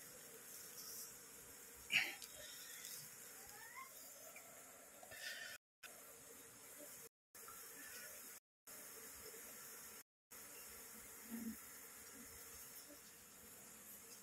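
Faint buzzing of an Asian honeybee (Apis cerana) colony whose nest has been opened up, with a short sharp click about two seconds in as comb and nesting material are handled. The sound cuts out completely four times, briefly each time.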